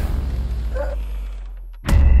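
Trailer sound design: a deep low rumble dies away slowly over nearly two seconds, then a sudden loud hit lands just before the end.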